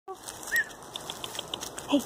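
Light rustling with quick, soft ticks, about seven a second, as of steps on dry fallen leaves and gravel, with one short high chirp about half a second in.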